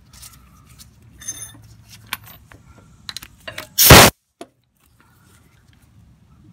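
Light clinks and scrapes of a socket and pneumatic impact wrench being fitted onto a rusted mower-deck spindle nut. Just before the four-second mark comes one short, loud burst from the impact wrench, triggered for a split second, and then it stops abruptly.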